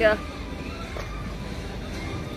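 Steady outdoor city background noise with a low rumble, after a woman's brief "yeah" at the start.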